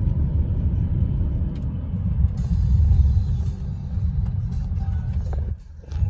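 Low, steady road rumble heard inside a moving car's cabin, dipping briefly for a moment near the end.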